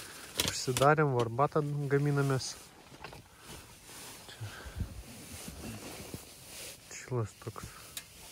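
A man's voice for the first two seconds or so, then low, scattered faint sounds, and a short spoken bit again near the end.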